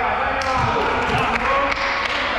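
Volleyball players calling out to each other in an echoing gymnasium, with several sharp knocks of ball and shoes on the court floor.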